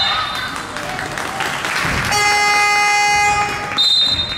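Basketball game buzzer sounding one steady electronic horn tone for about a second and a half, starting about two seconds in. A referee's whistle blast ends just after the start and another begins near the end.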